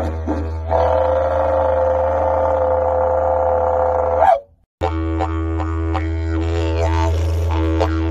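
Didgeridoo drone: a steady, deep continuous tone with shifting overtones, and a bright higher overtone held from about a second in. It cuts out briefly about halfway, then resumes with a different overtone pattern.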